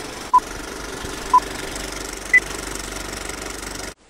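Old film projector sound effect, a steady mechanical clatter, with three short beeps about a second apart, the third higher, like a film-leader countdown. It cuts off abruptly at the end.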